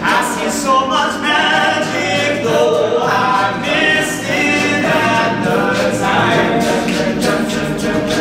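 All-male a cappella group singing close harmony, with a steady low bass note held under the changing upper voices.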